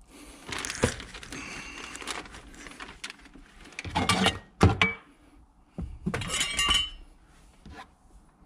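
Plastic sheet rustling as hands work over it, with a few knocks and clinks of metal tools being handled. A cluster of ringing metal clinks comes about six and a half seconds in.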